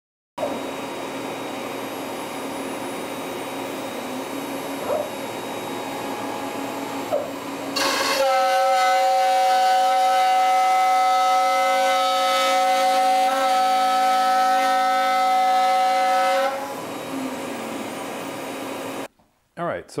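Carbide 3D spindle on a Shapeoko 5 Pro CNC router running with a steady hum, then from about eight seconds in a louder, steady high-pitched whine as the end mill cuts a pass through a wooden test board. The whine eases back after about eight seconds, and the machine stops near the end.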